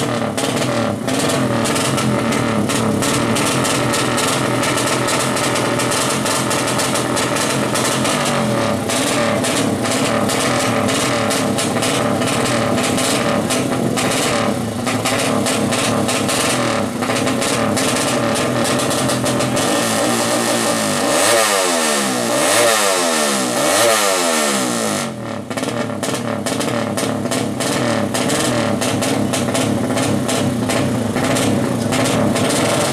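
A 200cc drag-racing motorcycle engine runs loudly and steadily. A little after two-thirds of the way through it is revved three times in quick succession, the pitch rising and falling with each rev.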